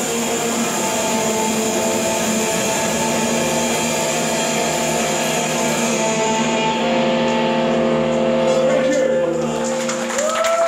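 A live rock band holding its final chord: electric guitar and bass ring out steadily under a wash of cymbals that thins out about two-thirds of the way through. The chord is cut off right at the end.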